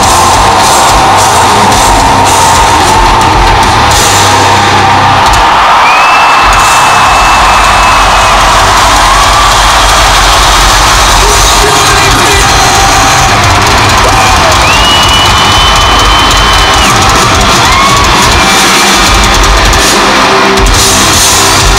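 Rock concert crowd cheering and yelling between songs, with a few long shrill whistles cutting through, over low music from the stage PA.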